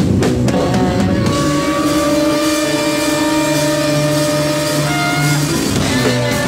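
Loud live heavy instrumental music from a drums, bass and baritone-sax band: a run of drum hits in the first second, then long held notes ringing out over several seconds with little drumming, and the drums coming back in at the end.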